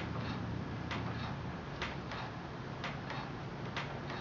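Soft, regular ticking about once a second from a manual kick wheel turning while a throwing stick and rib work a wet clay pot, over a steady low hum.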